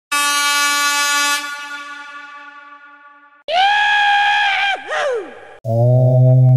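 Air-horn sound effects: a long horn blast that fades away over about two seconds, then a second horn tone that dips sharply in pitch and climbs back before cutting off. Near the end a low synthesizer tone begins, the start of electronic music.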